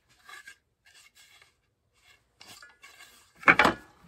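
A wooden strip of frame moulding being handled and turned over, with faint rubs and taps, then set down on the table saw's metal top with a knock and slide about three and a half seconds in. The saw is not running.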